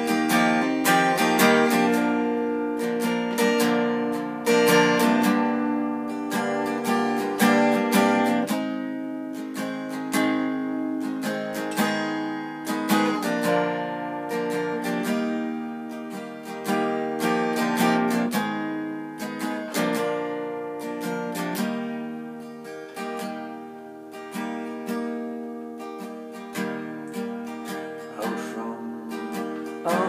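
Acoustic guitar with a capo, strummed chords without singing, played more softly in the last third.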